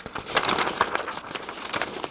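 Printed paper sheets rustling and crackling as they are picked up and handled, a dense run of small irregular crackles.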